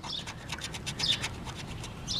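A wooden basting-brush handle scraping the scratch-off coating from a paper lottery ticket in a quick run of short, rasping strokes.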